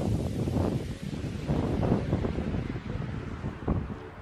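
Wind buffeting a phone's microphone: an uneven, gusting low rumble that rises and falls throughout.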